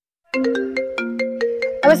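Mobile phone ringtone: a melody of short, marimba-like notes, several a second, starting about a third of a second in.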